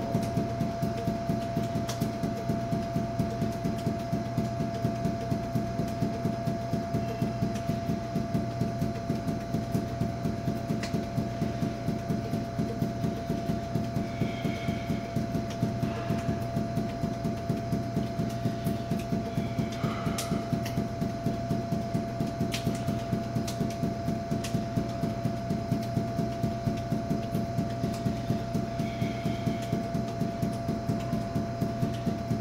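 Five rubber juggling balls force-bounced off a hard polished floor and caught, an even run of thuds at about four a second. A steady hum sits underneath.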